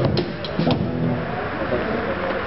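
An amplified rock band winding down at the end of a jam: two last drum hits about half a second apart, then the electric guitar and bass left ringing through the amps with a steady noisy hum.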